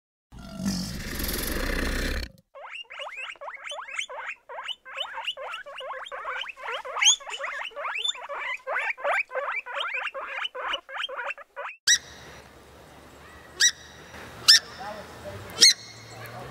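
A crocodile's short rasping hiss lasting about two seconds, then a group of guinea pigs squeaking in quick repeated chirps, several a second, for about nine seconds. Near the end a purple swamphen gives three sharp short calls.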